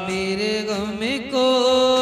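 A singer chanting a Sufi devotional kalam, with wavering ornaments on the pitch, then rising into a long, steady held note about a second and a half in.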